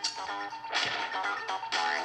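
Cartoon theme song music broken by three sharp, noisy hits, spaced just under a second apart, with pitched notes between them.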